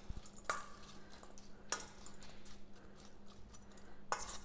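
A spoon stirring sliced apples in a stainless steel bowl, knocking against the metal a couple of times (about half a second in and just under two seconds in) with faint scraping clicks in between.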